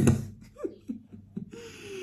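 A man's soft, breathy chuckle: a sharp outburst at the start, then short broken voiced sounds and a falling hum near the end.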